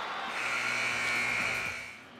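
Arena buzzer giving one steady electric buzz for about a second and a half over crowd noise in a volleyball hall, the signal for a player substitution.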